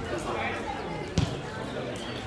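A football being kicked on a grass pitch: one sharp thump about a second in, over the continuous hubbub of players' and spectators' voices.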